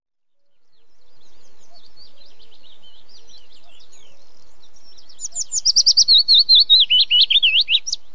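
Small birds chirping, fading in over the first second; faint scattered chirps give way about five seconds in to a loud, rapid run of repeated chirps, several a second.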